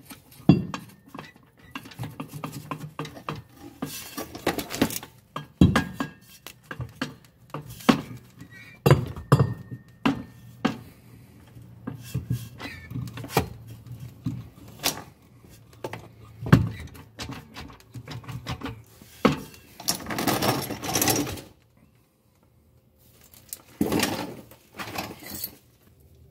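Steel driveshaft half being handled and fitted into the transmission, with scattered metal-on-metal clinks, knocks and scrapes against the car's underside. A couple of longer scraping stretches come near the end, after a brief pause.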